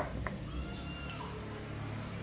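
Fresh green beans being snapped by hand. A sharp snap comes at the start with a smaller crack just after it. Then a pod squeaks as it is bent and twisted, for about half a second, and ends in another snap.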